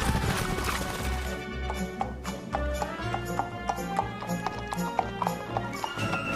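Horse hooves clip-clopping in a quick, uneven run of sharp clicks, a dubbed sound effect, over background music.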